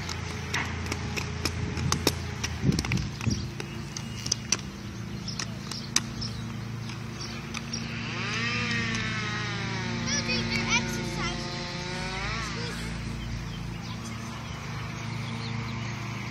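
Inline skate wheels rolling on asphalt, with scattered sharp clacks from the skates in the first few seconds. About halfway through comes a long, wavering, wordless call from a child's voice, pitched and lasting several seconds. A steady low hum sits under everything.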